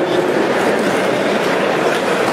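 A congregation talking among themselves all at once, a steady wash of many voices without any one voice standing out.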